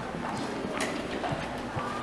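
Footsteps on a hard tiled floor, short clacks at about two steps a second.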